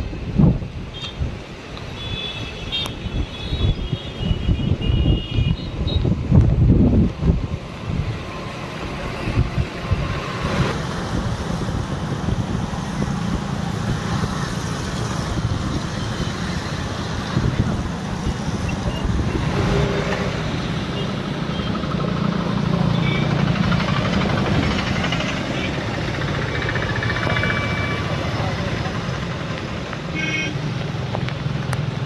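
Wind buffeting the microphone in gusts for the first several seconds, over the steady rush of a swollen, flooded river and the low drone of road traffic. A few short high tones sound near the start and again later on.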